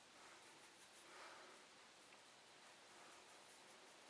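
Near silence: room tone with a few faint, soft swishes of an eyeshadow brush sweeping over the eyelid.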